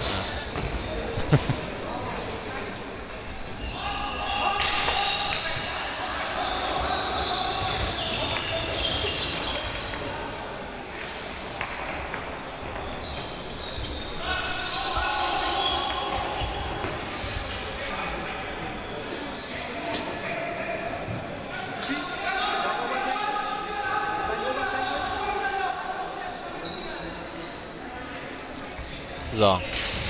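Indoor hockey play echoing in a sports hall: sharp, irregular clicks of sticks hitting the ball, with voices calling across the hall.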